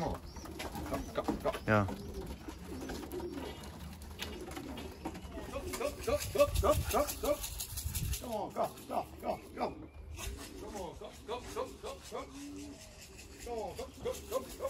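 Domestic pigeons cooing again and again in short phrases, with a man's single word near the start.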